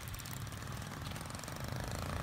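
Small motor scooter engine running as the scooter approaches.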